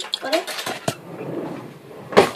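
Kitchen utensils clinking and knocking as they are handled, with one sharp knock a little under a second in and a stretch of rustling after it.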